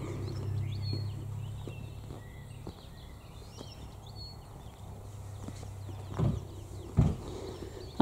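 Quiet outdoor ambience: faint bird chirps and a low steady hum, with two footsteps on the tarmac about six and seven seconds in.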